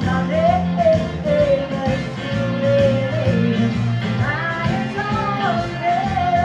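Live rock-and-roll-style music: a woman sings two long phrases with sliding notes into a microphone, starting a held note near the end, over steady accompaniment from a Roland XP-60 synthesizer keyboard.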